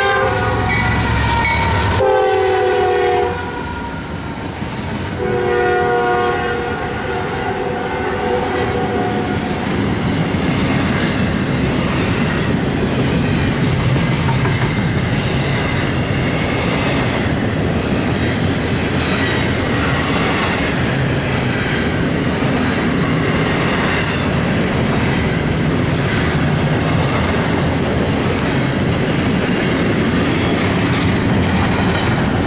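Freight locomotive's air horn blowing two long blasts, the first ending about three seconds in and the second from about five to nine seconds in. Then the steady rumble and wheel clatter of a double-stack container train rolling past at speed.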